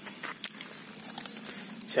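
Faint rustling and a few small, scattered clicks as a hand handles the trunk of a young potted iprik bonsai.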